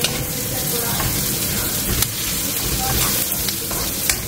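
Sliced onions and curry leaves sizzling steadily in hot oil in a nonstick wok, being stirred.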